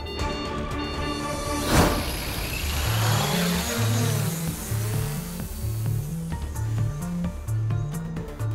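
Dramatic soundtrack music: about two seconds in a sharp hit with a whoosh, after which a pulsing, stepping bass line drives the music on.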